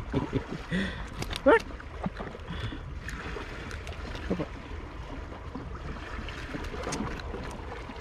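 Small waves lapping and gurgling against sea rocks over a steady low wash, with scattered light clicks of handling; a short vocal sound that rises and falls comes about a second and a half in and is the loudest moment.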